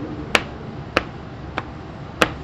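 Basketball bouncing on a hardwood gym floor in a steady dribble: three sharp slaps about 0.6 s apart, each with a short ring in the hall.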